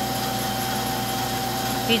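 Steady mechanical hum of a running machine, with a constant whine over a low drone.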